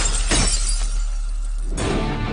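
Glass shattering from a bottle smashed over a man's head: a sharp crash at the start and a second one a moment later, fading off, over the film's background score, which swells back in just before the end.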